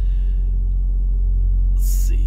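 Steady low rumble of an idling engine: a deep hum with a few even tones above it, unchanging throughout. A short hiss comes near the end.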